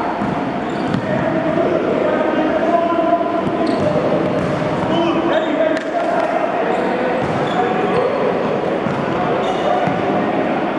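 Basketballs bouncing on a gym floor during a dribbling and passing drill, over the steady, indistinct chatter of many children's voices.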